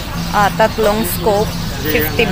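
A person's voice talking, not picked up as words, over a steady low hum.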